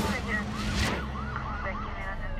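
A sudden burst of noise, then a police car siren yelping, its pitch rising and falling about three times a second.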